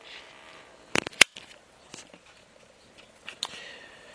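A few sharp metallic clicks and knocks, two close together about a second in and another near the end, as the cast-iron engine block is turned over on its engine stand.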